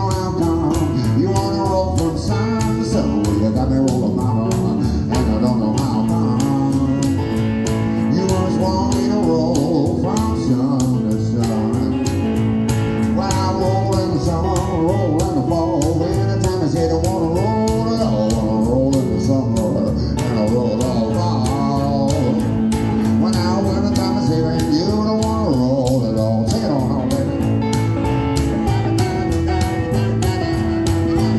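Live blues played on a hollow-body electric guitar and a plucked upright double bass, keeping a steady rhythm, with a man singing at times.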